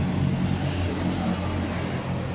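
Steady low hum and rumble of background din in a busy open-air eating hall, with no single event standing out.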